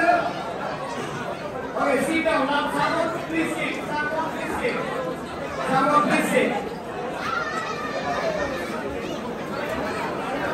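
Indistinct chatter of many people talking at once in a large hall, with no single clear voice.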